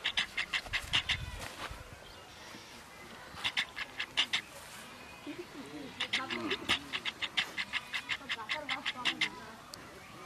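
Quick, breathy dog-like panting, about six or seven short breaths a second, in three bursts: near the start, around the middle, and a longer run in the last few seconds.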